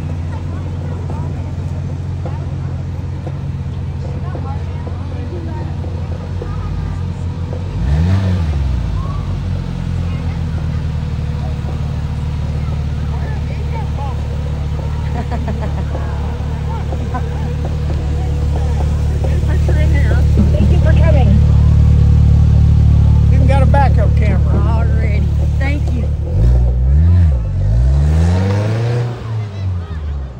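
Polaris Slingshot three-wheeler's four-cylinder engine running at low speed, with a quick rev about eight seconds in. It grows louder as it passes close by, then gives several quick blips of the throttle near the end.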